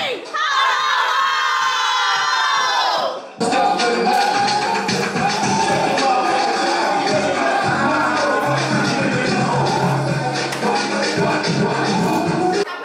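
A group of women cheering together in a toast, a long whoop falling in pitch. About three seconds in it cuts suddenly to loud music with a steady bass line.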